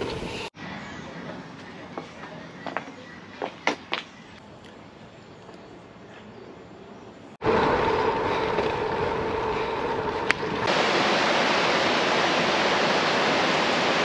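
Bike riding along a tarmac path, with wind on the microphone and tyre noise. Then a river running over rocky rapids, a steady even rush of water. Before these, several seconds of quieter background with a few sharp clicks.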